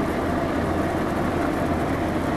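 Steady low mechanical hum with an even hiss over it, holding level throughout: equipment running in a small clinic room.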